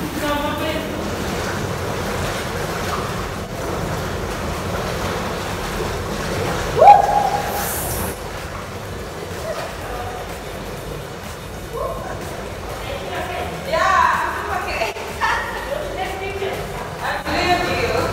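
Voices talking and calling out over a steady rushing hiss, with a brief rising cry about seven seconds in.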